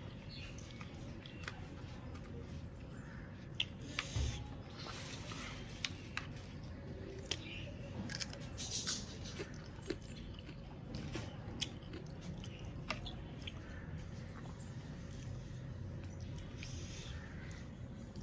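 A person chewing and biting on small cooked crab eaten by hand, with a dozen or so sharp crunches and clicks of shell scattered among the quieter chewing.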